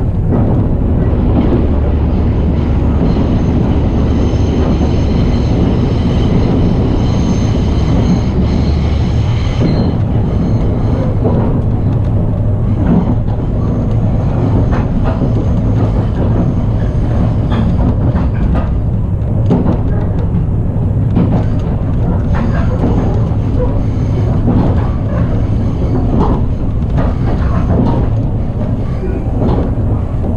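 Resort Shirakami train running along the line, heard from inside the carriage: a steady low rumble and hum with scattered clicks from the wheels on the rails. From about three to ten seconds in, a thin high whine sits over the rumble.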